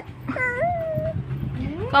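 A baby's high-pitched coo: one short call about a third of a second in, dipping and then holding level for about half a second.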